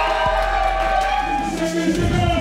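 Electronic music played over a sound system, with sustained tones that slowly slide in pitch over a steady deep bass, and a crowd cheering.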